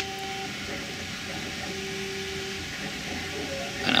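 Steady background hum and hiss in a small room, with faint steady tones coming and going, and light rustle of wires being handled.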